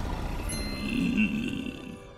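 A low, growling grunt from a shark-man character, starting about half a second in and lasting about a second.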